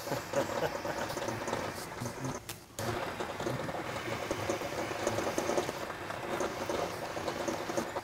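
Rockwell 10-inch metal lathe turning down a cold-rolled steel part, played back sped up eight times, so the machine and cutting noise run together into a dense, fast chatter. It drops out briefly about two and a half seconds in.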